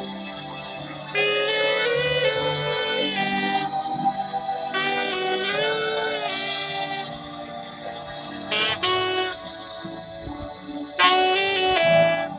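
Solo saxophone playing a slow melody of long held notes with vibrato; the playing softens for a couple of seconds before a louder phrase starts near the end.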